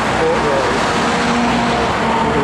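Steady road traffic noise from vehicles and trucks on the road below, a constant loud rush with a faint engine tone in the second half.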